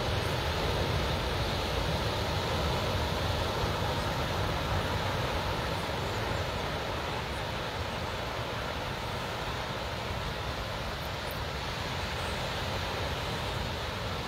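Steady wind rushing over the microphone, with a low rumble, over the continuous wash of surf breaking on the beach. The noise holds even throughout, with no single event standing out.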